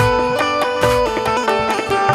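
Instrumental qawwali music: a quick melody of stepping notes over tabla strokes.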